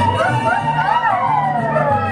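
A siren-like wail that rises to a peak about a second in and then falls slowly, over music with a steady, repeating bass line.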